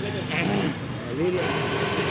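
Busy street ambience: indistinct voices over traffic noise. The background changes abruptly about one and a half seconds in, to a steadier, brighter noise.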